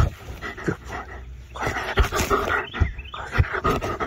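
German Shepherd dog barking close to the microphone, in about three bursts with short pauses between.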